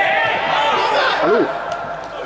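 Several people shouting at once, loud for about a second and a half and then dropping away, with no words clear.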